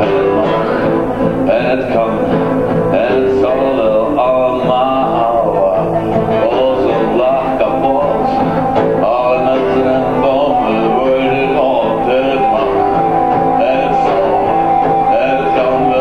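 Live acoustic music: two acoustic guitars playing a song together, played steadily without a break.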